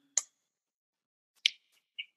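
Two short, sharp clicks about a second and a quarter apart, with silence between.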